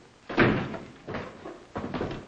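A wooden door shut with a bang about half a second in, followed by a couple of fainter knocks.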